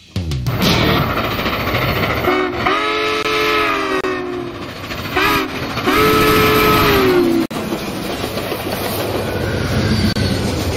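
Southern Pacific GS-4 steam locomotive's chime whistle blowing three blasts, long, short and long, the last sagging in pitch as it ends. It is followed by the steady rumble of the passenger train rolling past.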